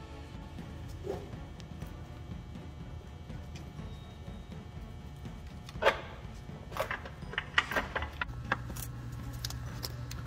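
Faint background music over a low steady hum. From about six seconds in come a series of sharp metallic clicks and clinks: hand tools and fasteners handled while working on the ECM in a diesel truck's engine bay.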